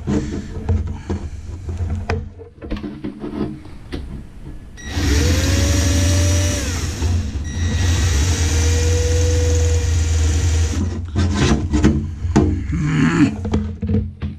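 Cordless drill running in two long bursts, starting about five seconds in, boring holes through a sheet-metal oven shield. In each burst the motor's pitch climbs as it spins up and sags as it slows. Handling knocks and clatter come before and after.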